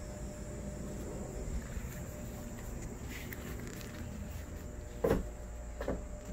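Steady low outdoor background rumble with faint handling noises, and a single short thump about five seconds in.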